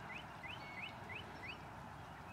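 A bird calling a fast series of short rising chirps, about three a second, which stops shortly before the end, over faint steady outdoor background noise.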